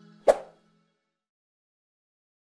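End-card music fading out, with a single sharp pop about a third of a second in: the click sound effect of an animated subscribe button.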